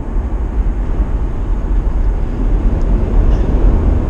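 Steady road and wind noise inside the cabin of a Mitsubishi Outlander PHEV at highway speed into a strong headwind, with its petrol engine running in series hybrid mode.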